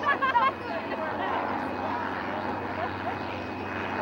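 Boeing 747 jet engines running steadily as the airliner taxis: an even rushing roar with a faint high whine over it.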